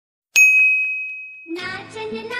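A single bright, bell-like ding that starts suddenly and rings down over about a second, on a title card. Background music with singing comes in near the end.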